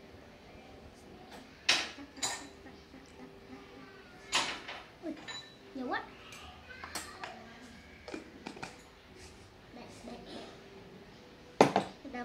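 Small spoon clinking against a glass salt jar and small metal bowls: a scattering of light taps, the sharpest about two seconds in, about four seconds in and near the end.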